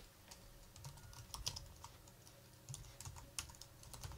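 Faint keystrokes on a computer keyboard: quick, uneven clusters of key clicks as a short command line is typed and entered.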